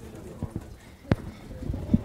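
Handling noise on a clip-on microphone as it is fiddled with and refitted: a few light knocks and rubs, with one sharp click about a second in and another near the end.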